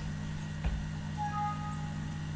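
Windows 7 system alert chime, two short overlapping notes, as a warning dialog pops up saying the computer's performance is slow. A soft thump comes about half a second before it, and a steady low electrical hum runs underneath.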